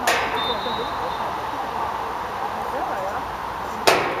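Football match on an artificial pitch: distant players' voices and calls throughout, with two sharp knocks of the ball being kicked, one right at the start and a louder one near the end.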